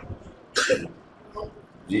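A man's single short cough, a brief noisy burst about half a second in.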